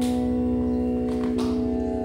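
Instrumental music between sung verses: a steady, sustained organ-like chord, with a new low note entering at the start.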